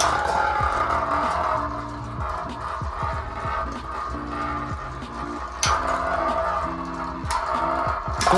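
Two metal-wheel Beyblades, Storm Pegasus on its rubber flat tip and Rock Aries, spinning and scraping across a hard satellite-dish stadium with a steady whirring hiss. One sharp clack as they collide about two-thirds of the way through. Background music with held notes plays over it.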